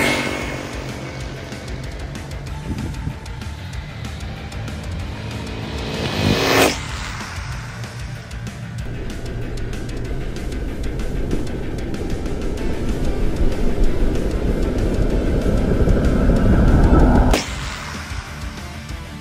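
Background music over an electric Arrma Talion RC car making high-speed passes on a road. Its motor and tyre noise build over the second half as it approaches, then cut off sharply just before the end.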